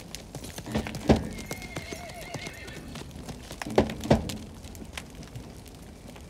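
Horses let loose, with heavy hoof thumps on the ground and a horse neighing in a wavering call about one and a half seconds in.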